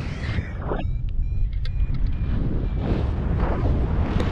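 Wind buffeting the microphone of an action camera held out from a paraglider in flight. It makes a constant low rumble with gusty surges just before one second in and again around three seconds in.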